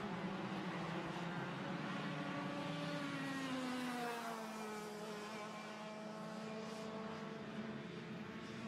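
Two-stroke racing kart engine running in the distance. Its note drops smoothly in pitch between about three and five seconds in, then holds steady.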